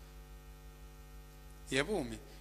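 Steady electrical mains hum from the microphone and sound system, heard through a pause in speech. A man's voice comes in near the end.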